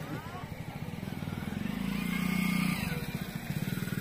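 A small engine running steadily, a low pulsing hum that grows louder over the first two seconds and then holds.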